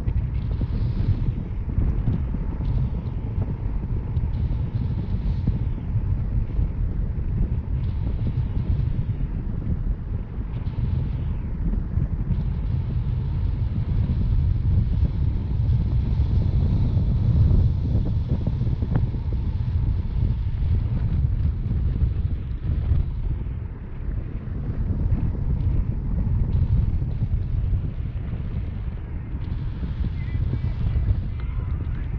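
Airflow buffeting a handheld camera's microphone during a tandem paraglider flight: a steady low rumble that swells and eases.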